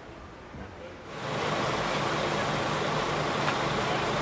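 A faint background for the first second, then a sudden switch to a steady, louder machine noise with a low hum underneath, running without change.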